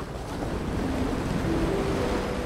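Sound effect of a strong underwater current: a steady rushing whoosh of water that swells slightly in the first second or so, with a few faint held low notes beneath.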